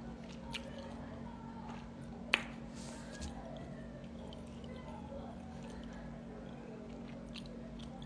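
A person faintly chewing a mouthful of dumpling (mandu), with one sharp click a little over two seconds in, over a steady low hum.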